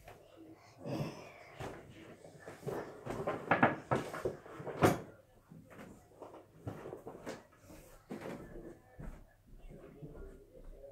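Scattered knocks and thumps, several close together and the loudest about five seconds in, with a few brief vocal sounds among them.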